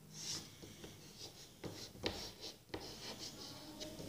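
Chalk writing on a blackboard: faint scratching with a few short, sharp taps.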